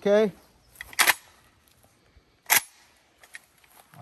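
Two short, sharp clacks about a second and a half apart as a 7.62x39 Palmetto State Armory AK rifle is handled and readied to fire.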